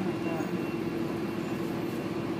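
Steady drone of a double-decker bus's engine heard from inside the upper deck, a constant low hum under the cabin noise as the bus creeps forward in traffic.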